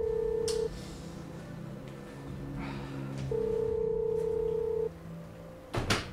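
Telephone ringback tone of an outgoing call: a steady beeping tone heard twice, each about a second and a half long, with a pause of about two and a half seconds between. A short, sharp burst near the end is the loudest sound.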